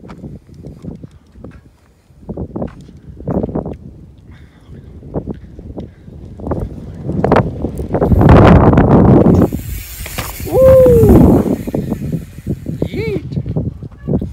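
Mountain bike riding a dirt jump line and passing close by, its tyres crackling over the dirt. The noise builds to a loud rush of tyre and wind noise as it goes past, with a high hiss. A short voiced exclamation follows.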